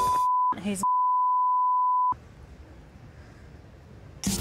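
A steady, high censor bleep over spoken words, broken once by a short spoken word and cutting off about two seconds in, followed by faint room tone.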